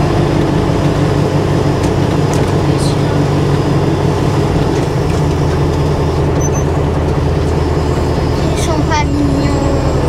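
MAN KAT1 army truck's diesel engine running steadily at low speed, heard from inside the cab as the truck rolls over a gravel road, with tyre and road noise underneath.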